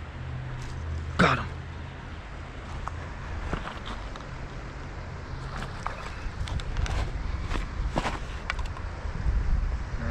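Fishing tackle and footsteps on creek-bank gravel while a trout is played on a spinning rod: scattered clicks and knocks that grow busier in the second half, over a steady low hum. A short rising pitched call sounds about a second in.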